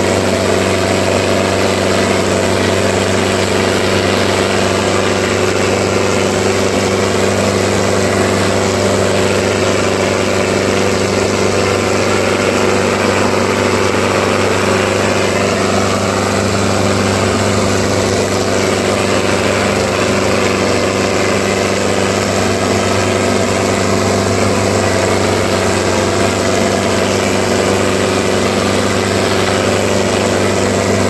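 Tractor diesel engine running at a steady, unchanging speed, pulling a harrow.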